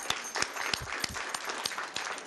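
Small audience applauding, a few people clapping, with separate claps clearly heard; the applause thins out toward the end.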